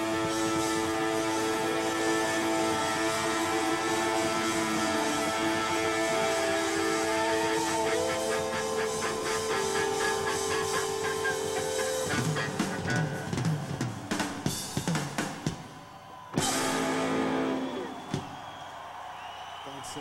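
Rock band playing live: held electric guitar chords ring over the drums for about twelve seconds. Then comes a run of loose drum and cymbal hits, a short break, and one loud final chord that stops about two seconds later, leaving a quieter steady background.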